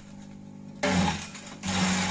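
Kelani Compost KK100 shredder running with a steady motor hum. About a second in, and again near the end, it breaks into loud chopping as gliricidia branches are fed through its cutter.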